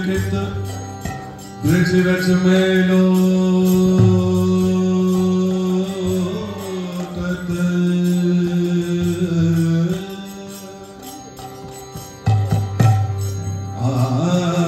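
Devotional mantra chanting with long held notes: a loud phrase begins about two seconds in and fades about ten seconds in, and a new phrase starts near the end.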